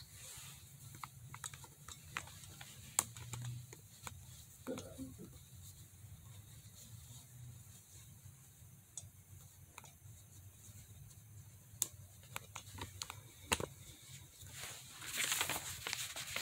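Faint handling noise: a fleece jacket's fabric rubbing against the phone's microphone, with scattered light clicks and a louder rustle of cloth near the end.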